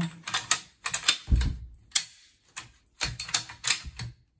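Bolt of a bolt-action rifle being slid into the action and worked: runs of sharp metallic clicks in several clusters, with one heavier clunk about a second and a half in. It is being checked for smooth function after assembly.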